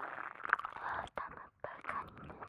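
A woman whispering close to the microphone in Japanese, with small clicks scattered through it and brief pauses between phrases.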